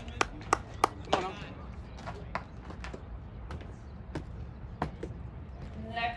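A quick run of four or five sharp knocks or claps, about three a second, then a few single ones spread out more widely, over a steady low outdoor background.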